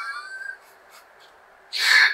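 A man's laughter trailing off, a quiet pause of about a second, then a sharp, loud breath near the end as the laughing starts up again.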